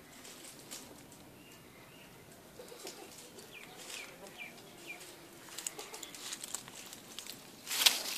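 Faint bird chirps, a run of short falling notes about three to five seconds in, then a loud burst of rustling and crackling near the end.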